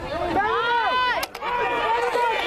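Sideline crowd shouting over one another, several voices yelling at once in high rising-and-falling calls, with a sharp knock a little past halfway.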